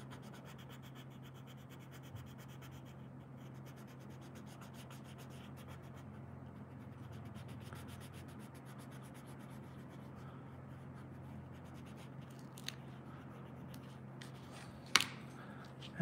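Coloured pencil rubbing steadily on paper while shading in an area of green grass, a faint scratchy sound. One sharp tap comes near the end.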